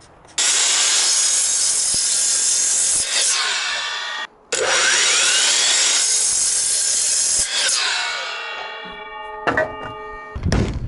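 DeWalt miter saw running and cutting through a wooden board, starting suddenly with a very brief break about four seconds in. Near the end the blade winds down with a fading ringing whine.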